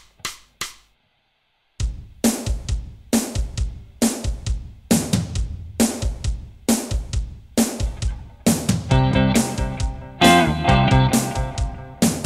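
A drum backing track starts after a couple of sharp clicks and settles into a steady rock beat; from about eight and a half seconds in, a Stratocaster-style electric guitar and other pitched instruments join over the drums.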